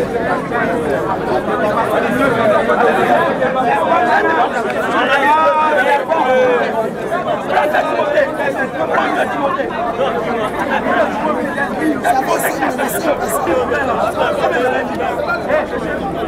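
Many people talking at once: a steady babble of crowd chatter.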